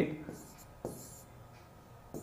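A few faint, short pen strokes scratching on a writing board as a circled numeral is written, one stroke just under a second in.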